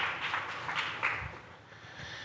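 Footsteps and light knocks as people cross a stage and sit down on chairs, a handful of irregular sharp taps in the first second, then faint room noise.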